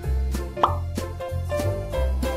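Upbeat background music with a steady bass line. A short rising 'plop' sound effect comes about two-thirds of a second in.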